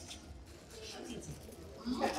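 A pigeon cooing in low, falling notes, with the crinkle of a plastic wrapper being handled.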